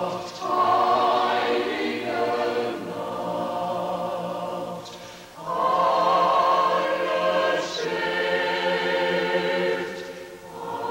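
Choral music: a choir singing long sustained chords in two swelling phrases, the second starting about halfway through, with vibrato in the voices.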